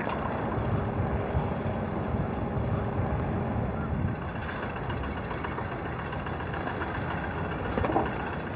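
Steady low rumble of harbour background noise with boat engines droning, and a brief rustle just before the end.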